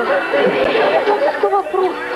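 Several people's voices overlapping in a chatter of speech.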